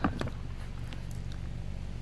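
Faint handling of items in a small wooden storage cabinet: a couple of light clicks right at the start, then a low steady hum.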